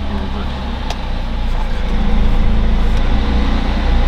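A car engine running at low revs while the car reverses, heard from inside the cabin, growing a little louder about halfway through.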